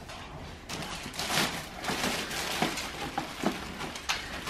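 Clear plastic packaging bag crinkling and rustling in irregular bursts as a boxed infant car seat wrapped in it is handled.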